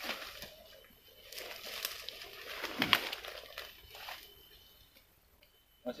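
Footsteps and rustling as people push through forest undergrowth and leaf litter: irregular crunches and leaf swishes, loudest about halfway, dying away near the end.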